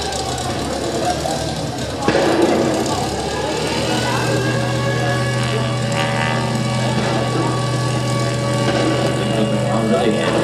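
A steady, engine-like low drone through the stage sound system. It builds about two seconds in and settles into a constant hum, with crowd chatter under it.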